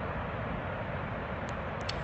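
Steady rushing roar of high water flowing from a dam spillway, an even noise with no rhythm or pitch. Two faint ticks come near the end.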